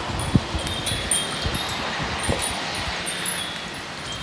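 Outdoor ambience: wind rumbling on the microphone, with scattered faint, high tinkling tones at uneven intervals.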